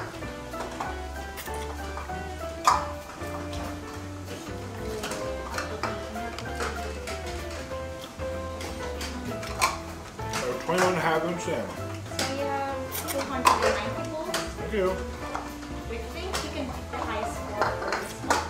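Background music with held notes and a steady bass line, over the clatter of bowls and utensils as noodles are eaten, with brief voices in the background.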